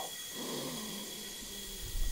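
A man taking one slow, deep breath through a dental anaesthetic gas mask about half a second in, as he goes under from the gas.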